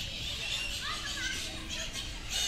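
Background chatter of people, with children's high voices calling and playing.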